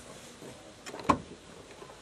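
A single brief thump about a second in against faint background hiss: a person's body shifting and bumping on a car's bonnet and windscreen.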